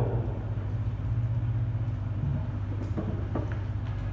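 Steady low hum of the room and the sound system relaying the trial, heard in a pause between spoken passages, with a couple of faint clicks about three seconds in.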